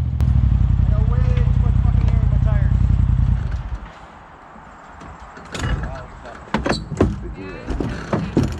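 A side-by-side UTV engine running close by with a low, rapid pulsing, loud for about three and a half seconds and then stopping. A few sharp clicks and knocks follow near the end.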